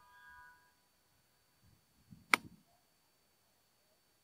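A single crisp click of a wedge striking a golf ball on a pitch shot, about two and a half seconds in, with a faint brush of the club through the grass around it. The ball is a Nitro Elite Pulsar Tour, which the golfer finds firm-feeling, like a cheaper ionomer-covered ball.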